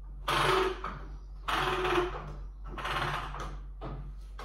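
Ratchet on the warp beam of a 48-inch rigid heddle loom clicking as the beam is wound on, in four bursts of clicking a little over a second apart, one per turn of the handle.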